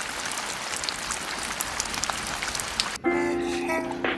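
Steady rain falling and pattering on surfaces, with scattered tiny drop ticks. About three seconds in it cuts to background music with held notes.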